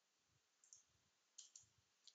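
Near silence with a few faint computer clicks from editing work: one just under a second in and a pair about a second and a half in.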